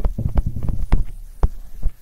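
Stylus tapping and clicking on a writing tablet as a word is handwritten: a quick, irregular run of sharp taps that thins out and stops about a second and a half in.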